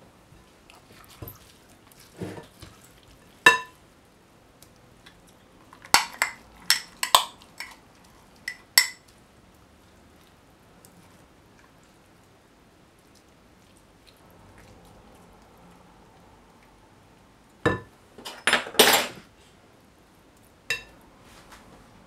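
Spoon and glass jar clinking and knocking against a glass mixing bowl as green seasoning is spooned into the jar: scattered sharp clinks, a quick run of them about six to nine seconds in, and another cluster about eighteen seconds in.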